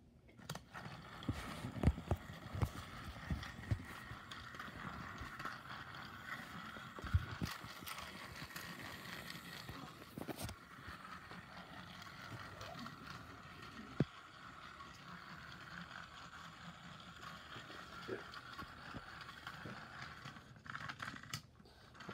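Battery-powered Trackmaster Salty toy engine running on plastic track: a steady small-motor whine with scattered clicks and rattles, switched on about half a second in and stopping near the end. A few low thumps of handling in the first seconds.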